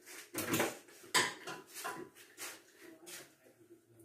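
A spoon working sticky pink marshmallow rice-cereal mixture in a tray: five or six short, irregular scrapes and clicks.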